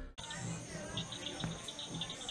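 Faint crickets chirping in a quiet night ambience, with a quick run of high chirps about halfway through.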